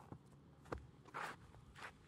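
Faint, irregular knocks and scuffs, about four in two seconds, the longest a short scrape about a second in, over a low hum.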